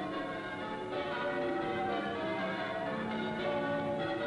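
Large bells pealing: strokes at several pitches follow one another quickly, each note ringing on and overlapping the next.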